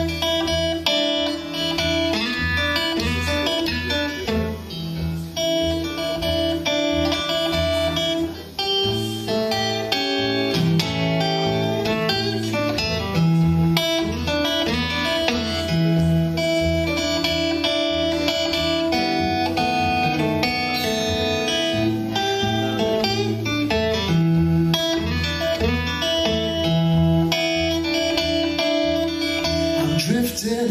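Acoustic guitar playing a blues instrumental passage with no singing: picked notes over a steady pulse of low bass notes.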